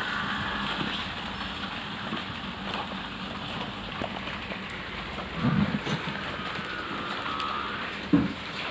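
Cotton cloth rustling and being handled, a steady hiss of noise, with a dull low thump about five and a half seconds in.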